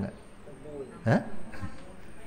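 A man's brief voice sounds: one short syllable rising in pitch about a second in, with softer murmurs around it, as he breaks into a smile and a chuckle.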